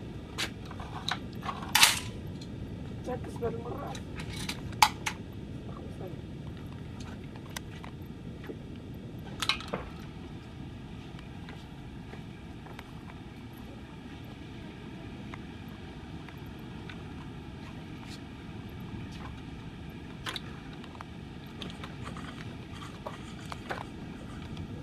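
12-gauge shotgun shots on a clay trap range: sharp reports, the loudest about two seconds in and another about five seconds in, with a weaker one near ten seconds, over a steady low background rumble.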